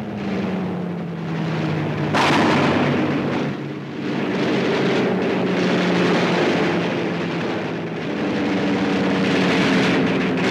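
Combat sound on a WWII film soundtrack: a steady drone of aircraft engines under rough bursts of gunfire and explosions. The loudest burst breaks in suddenly about two seconds in.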